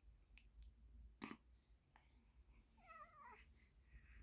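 Near silence, broken by a faint click just over a second in and, about three seconds in, a short, faint wavering squeak from a newborn baby.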